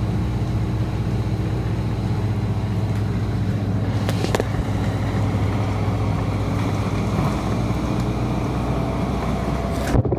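Steady drone inside a moving 2011 Orion VII 3G transit bus, its Cummins ISL9 diesel engine and road noise holding an even pitch, with a short click about four seconds in.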